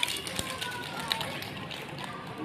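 Faint chatter of young children with scattered light taps, and one low knock about half a second in.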